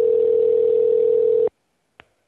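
Telephone ringback tone heard down the phone line: one steady ring of about two seconds that stops about a second and a half in. It is the sign that the called phone is ringing at the other end.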